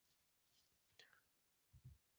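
Near silence in a pause between sentences, with only a faint breath or mouth sound about a second in.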